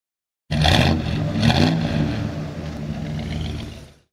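Car engine that cuts in suddenly, is revved twice about a second apart, then runs steadily and fades out near the end.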